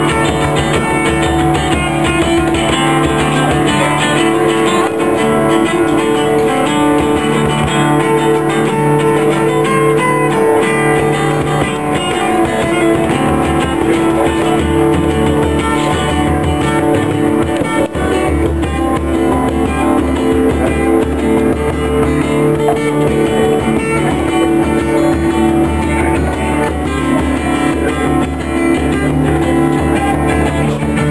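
Acoustic guitar playing a lively jig, accompanied by a bodhran (Irish frame drum) beaten in time.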